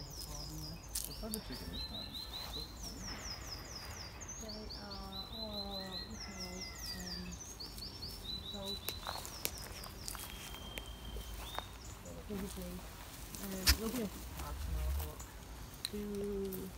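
A small songbird singing in the background: repeated quick runs of high notes stepping down in pitch, over faint distant voices and outdoor noise. A single sharp click sounds about two-thirds of the way in.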